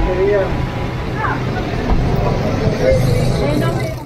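Busy street ambience: traffic and minivans running nearby, with people talking around.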